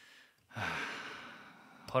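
A man's audible breath close to the microphone, starting about half a second in and fading over about a second, before speech resumes near the end.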